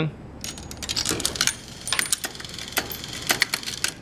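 Cavalier 96 Coke machine's coin changer taking a quarter and paying out change: a run of metallic clicks and coin clinks as the quarter drops through and the motor-driven cam shoots out three nickels.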